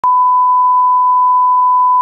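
A loud, steady 1 kHz test-tone beep, the reference tone that goes with a TV test card, held unbroken at one pitch.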